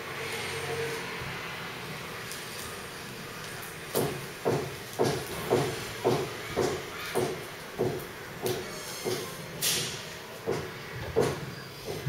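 Thin plastic wrapping around a smartphone rustling and crinkling as the phone is worked out of it. In the second half the crinkles come in a regular run, about two a second.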